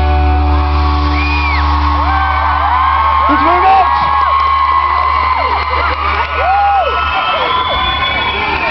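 A live rock band's final chord rings out over a low held bass note, with the audience screaming, whooping and cheering. The chord fades after a few seconds, and the bass note cuts off about seven seconds in, leaving the crowd.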